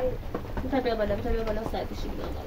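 A voice speaking briefly, about half a second in, over a steady hiss of rain.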